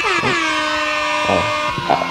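Air horn sound effect: a loud chord of horn tones that slides down in pitch at the start, then holds steady and dies away near the end.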